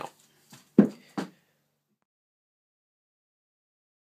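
Three short sounds from the man's voice in the first second and a half, the middle one the loudest, then dead silence.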